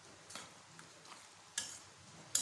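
Steel spoon stirring thick chickpea gravy in an aluminium pressure cooker pot, with a soft scrape about a third of a second in and a sharper scrape against the pot's side at about a second and a half.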